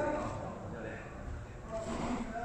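Speech: a man's voice in short phrases, over a steady low room rumble.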